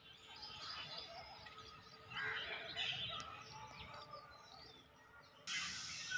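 Birds chirping in the background, many short chirps scattered through, busiest around the middle. Near the end a steady hiss comes in suddenly.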